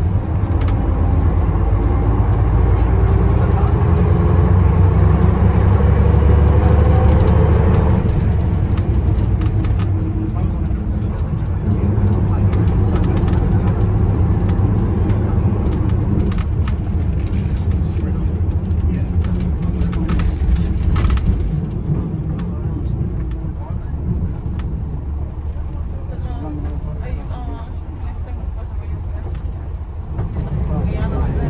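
Bristol LS coach's diesel engine heard from inside the saloon, its pitch rising for about eight seconds under acceleration, then dropping suddenly at a gear change and running on more steadily.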